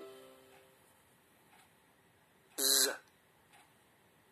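Coursebook audio: the last notes of a short plucked-string jingle fade out in the first second, then a single short spoken sound about two and a half seconds in.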